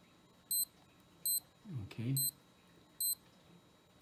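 SKMEI digital watch's key beep: four short, identical high-pitched beeps about 0.8 s apart as the top button is pressed in temperature-calibration mode, each press stepping the temperature reading down by 0.1 °C.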